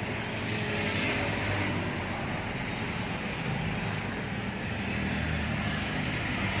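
A steady, low mechanical rumble under a constant hiss.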